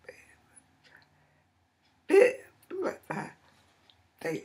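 A woman's voice: three short spoken bursts about halfway through, the first the loudest, with only faint sounds before them.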